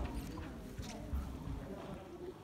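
Footsteps and a few sharp knocks on a sports-hall floor as a handler runs the course, with voices talking in the background.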